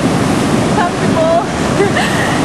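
Ocean surf washing and breaking on a rocky shore, a steady rush of wave noise. A faint voice sounds briefly about halfway through.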